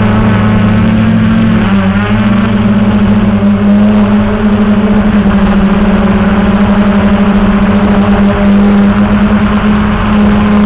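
Traxxas Aton quadcopter's brushless motors and propellers humming steadily in flight, the pitch wavering slightly as the throttle shifts.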